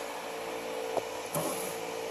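A steady mechanical hum with a faint constant tone, broken by a light click about halfway through and a brief rustle just after.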